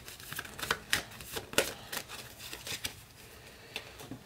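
A tarot deck being shuffled and fanned out by hand: a run of irregular, papery clicks and flicks, thinning out after about three seconds.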